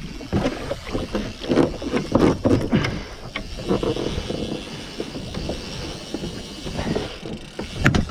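Water splashing and slapping irregularly against a small boat's hull as a hooked bull shark thrashes alongside while its hook is being worked out.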